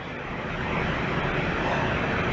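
Steady, even rushing noise with no voice in it, growing slightly louder.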